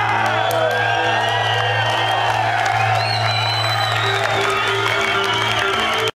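Live rock band playing, with electric bass and keyboards holding steady low notes. Audience whoops and cheers rise and fall over the music.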